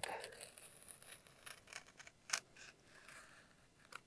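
Large snap-off utility knife slicing a slot into a foam wing: faint, quick scratchy cuts, with a sharper tick a little past halfway.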